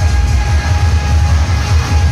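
Loud music with a strong, steady bass.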